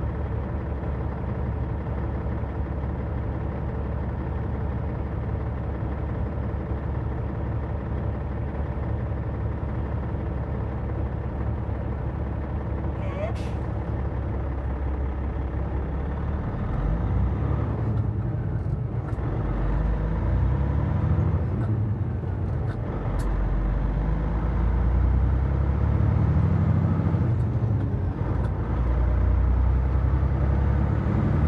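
Heavy truck's diesel engine idling steadily, then from about halfway through pulling away, its pitch climbing and dropping back several times as it works up through the gears.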